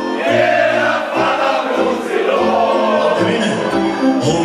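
A group of men singing a Romanian patriotic song together in chorus, loud and raised, over a band's keyboard accompaniment with a bass line moving note by note.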